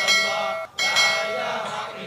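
Two rings of a notification-bell chime sound effect: the first starts suddenly and is cut off after about half a second, the second follows a moment later and fades away.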